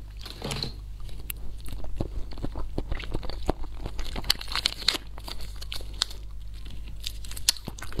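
Close-miked eating sounds: jelly squeezed from a plastic stick pouch into the mouth and chewed, with many small sharp clicks and crinkles of mouth and packaging throughout.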